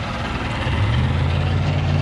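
Mercury 200 two-stroke V6 outboard idling steadily with a low, even hum; the engine is warm and running smoothly.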